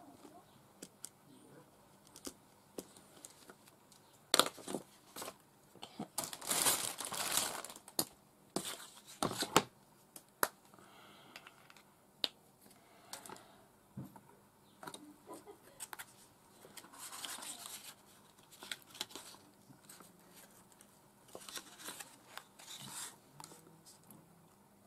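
Paper and a strip of brown card being handled and moved about on a cutting mat: irregular rustling, crinkling and sharp taps, busiest in a run of bursts from about four to ten seconds in.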